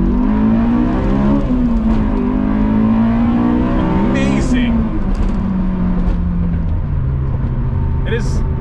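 Honda S2000's two-litre four-cylinder engine, heard from inside the cabin. Its pitch climbs and dips a couple of times in the first half as the car pulls through the gears, then falls steadily as it eases off, settling to a steady drone near the end.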